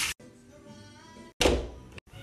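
Soft background music, then about one and a half seconds in a single loud thud of an interior door being pushed shut.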